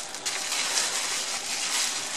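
Plastic bubble wrap rustling and crinkling as it is unwrapped from around a vacuum tube, a steady crackly rustle.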